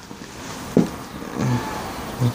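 A car passing outside, heard as steady road noise. A short sharp sound comes about a second in, followed by a brief low sound.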